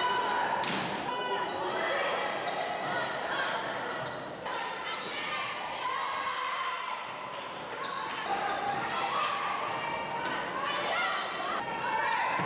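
Live volleyball rally in a gymnasium: players calling and spectators shouting, with the thuds of the ball being struck.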